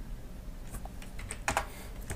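Computer keyboard being typed on: a few faint, separate keystrokes as a search term is entered.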